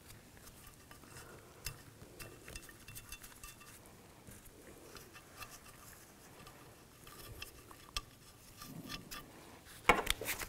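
Faint small metallic clicks and scrapes of nuts being threaded by hand onto the studs of a rusted steel bracket on a plastic air pump, with a sharper click near the end.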